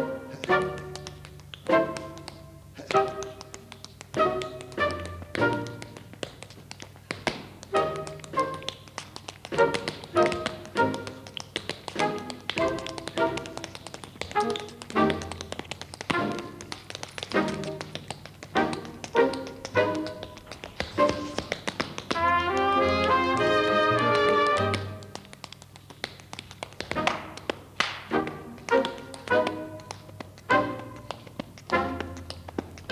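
Tap shoes striking a wooden stage floor in rhythmic tap-dance steps, over instrumental music accompaniment. About two-thirds of the way through, the music swells into a loud held chord for about three seconds, then the taps and short notes resume.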